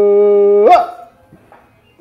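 A man's voice holding one long, dead-level note, sliding upward as it breaks off about three-quarters of a second in.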